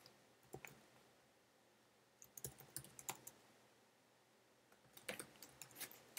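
Computer keyboard typing, faint, in short bursts of keystrokes with pauses between them: once about half a second in, a quick run a couple of seconds in, and another run near the end.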